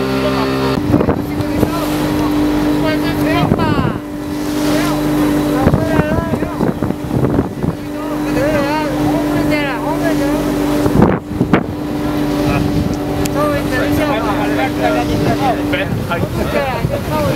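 Boat engine running at a steady cruise, a constant pitched hum, with wind buffeting the microphone and voices calling over it.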